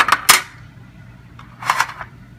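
Clear plastic display case coming open: two sharp plastic clicks right at the start as the tabs release, then a short plastic scrape or clack near the end as the lid is lifted off.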